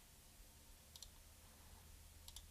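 Near silence with a single faint computer mouse click about a second in.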